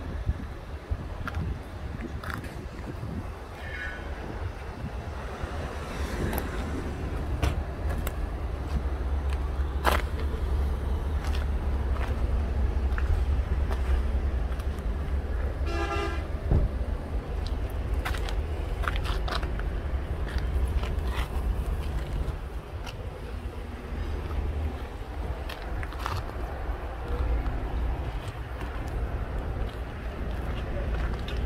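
Steady low rumble of wind on the microphone with scattered clicks of camera handling. About sixteen seconds in, a short vehicle horn toot sounds, after a fainter one about four seconds in.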